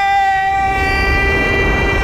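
A man's long, drawn-out shout of "Nooo!", held at one high pitch throughout, over a low rumble.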